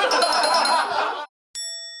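Edited-in sound effects marking a correct answer: a bright chiming jingle over laughter that cuts off suddenly about a second in, then a single struck bell-like ding with a long ringing decay.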